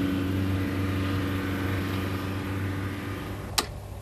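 A car engine running with a steady low drone, slowly fading as it draws away. A single sharp click comes near the end.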